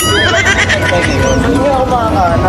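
A high, wavering squeal of laughter in the first half second, over the chatter of a crowded street.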